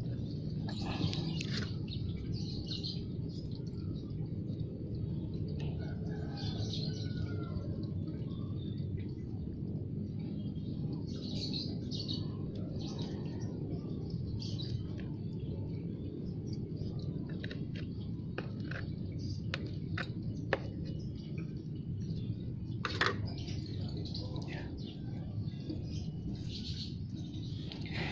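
Soft rustling and crumbling of potting soil as a clump of water spinach roots is shaken loose and scraped with a small fork, with a few sharp ticks partway through. A steady low hum lies underneath, and birds chirp here and there in the background.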